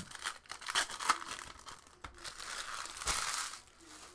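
Foil wrapper of a 2018 Topps Chrome Baseball card pack crinkling as it is handled and torn, in irregular rustles with a longer, louder stretch of crinkling after about two seconds.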